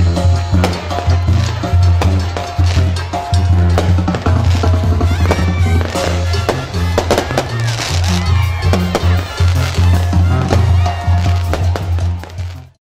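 Loud music with a heavy bass beat, over the rapid crackling pops of stage fireworks.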